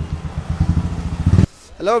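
Customised Royal Enfield Classic 350's single-cylinder engine running with a low, rapid thump as the motorcycle comes to a stop, growing louder before it cuts off suddenly about a second and a half in.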